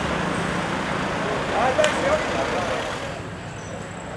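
Busy street ambience: steady traffic noise with people's voices talking in the background. There is a sharp click about halfway through, and the sound gets a little quieter near the end.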